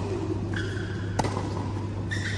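A tennis ball is struck once on an indoor court, a single sharp pop about a second in, over a steady low hum.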